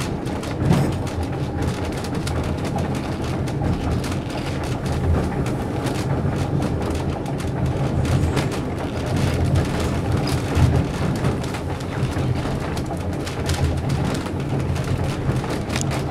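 White Pass & Yukon Route passenger train in motion, heard from inside the coach: a steady low rumble of the running gear on the rails, with frequent small clicks and rattles.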